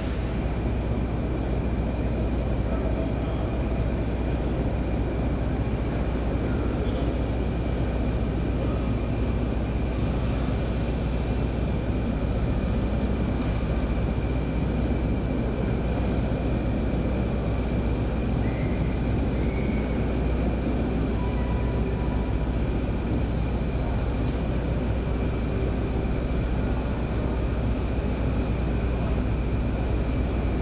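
Steady low rumble of trains standing in a station shed, with a faint steady high-pitched whine over it and no change in level.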